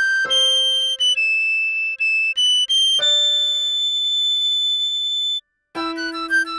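Recorder melody playing a few held notes over piano chords that sound and die away under it. Near the end the music cuts out for a moment, then a quicker run of short notes begins.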